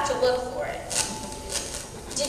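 A voice trails off at the start, then two short clicks or knocks come about half a second apart.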